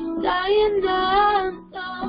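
A high voice singing a worship song (alabanza) over steady instrumental accompaniment, with a brief break in the melody a little past the middle.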